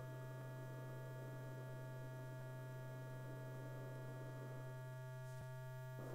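Steady electrical hum on an old 16 mm film soundtrack, with faint high steady tones above it and a faint tick near the end.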